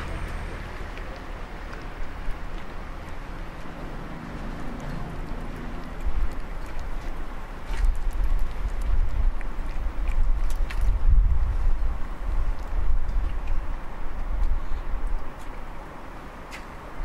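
A cat eating wet food, with a few faint chewing clicks, over a low steady rumble that grows louder from about six seconds in.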